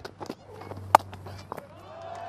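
Cricket bat striking the ball: a single sharp crack about a second in, with a few softer knocks around it over a steady low hum.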